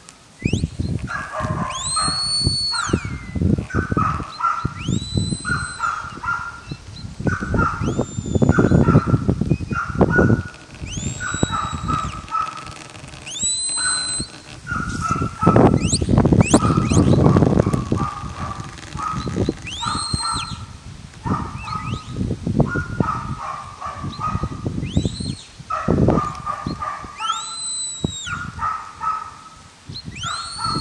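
Shepherd's whistle commands directing a working sheepdog: about ten short, high whistles, each rising, holding and dropping off, every two to three seconds. They sound over bursts of low rumble.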